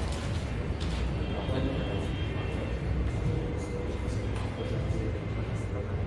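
Felt-tip marker writing on a whiteboard in a few short strokes, over a steady low room rumble with faint murmuring voices.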